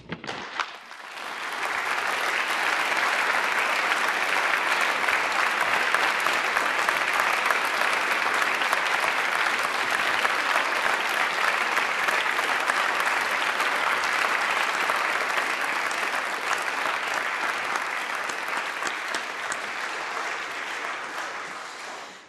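Audience applauding. The applause swells over the first couple of seconds, holds steady and tails off near the end.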